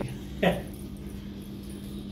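A baby's brief high yelp, falling quickly in pitch, about half a second in, over a steady low hum.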